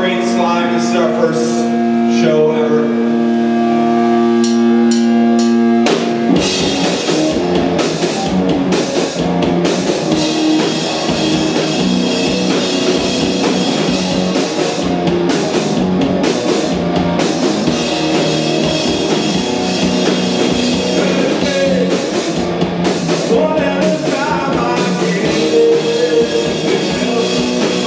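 Live rock band with electric guitar and drum kit. A held, ringing guitar drone sounds alone for about six seconds, then the drums and guitar come in together and play loud, driving rock.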